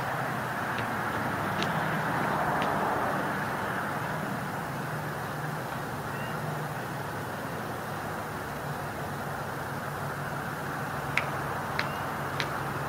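Steady city street traffic noise with a low engine hum underneath, and a few light clicks near the start and again near the end.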